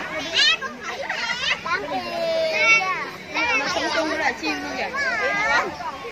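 Children's high-pitched voices chattering and calling out excitedly, several at once, rising and falling in pitch.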